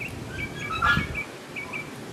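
Small birds chirping: a run of short, quick, high chirps, with one brief louder sound about a second in.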